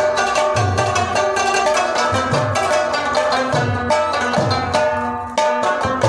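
Several Pashtun rababs plucked together in a fast folk tune, with a mangay (clay pot drum) keeping time in deep strokes that slide down in pitch. The playing thins briefly a little after five seconds in.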